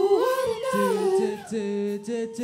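Live singing into a handheld microphone: a wordless, hummed or vocalised line that slides between notes, with a lower note held steady underneath from about halfway through.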